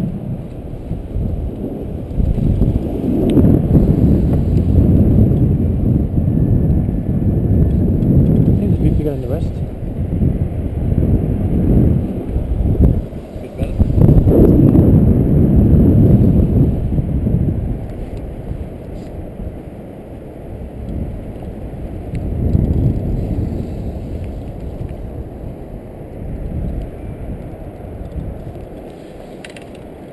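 Wind buffeting the camera's microphone: a low, unpitched rumble that surges in gusts, strongest about three seconds in and again about halfway, then easing off.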